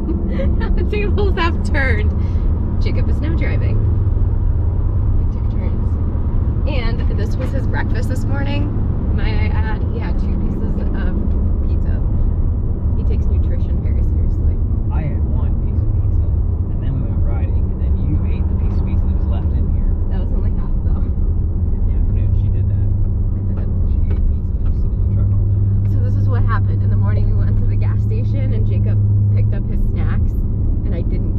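Steady low drone of a pickup truck's engine and road noise, heard from inside the cab while driving.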